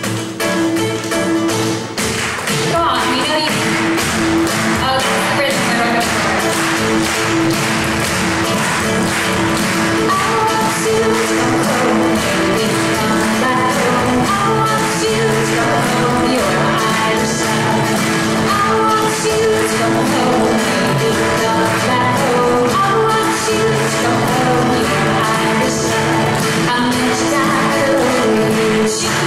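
Live Irish folk music: a steel-string acoustic guitar strums a steady rhythm, with a bodhrán tapping along and a woman singing.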